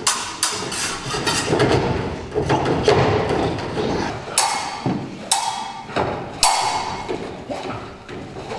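A series of sharp clacking strikes, each with a short ring: a quick cluster near the start, then three louder, evenly spaced hits in the second half.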